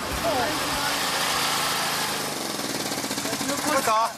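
A small engine running steadily, with voices over it.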